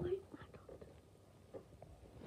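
A soft, hushed voice that trails off just after the start, then near-quiet with a few faint small clicks and rustles.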